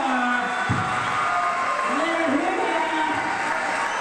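A song playing, a vocal line with long held notes over backing music.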